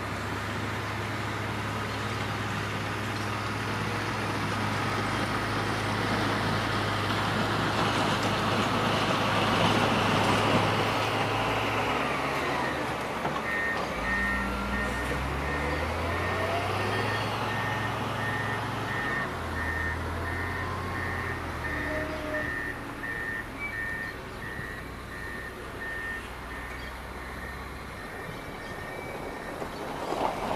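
Komatsu GD655 motor grader's diesel engine working, growing louder as the machine comes close over the first ten seconds or so. It then shifts pitch as the grader backs away, its reverse alarm beeping steadily about twice a second.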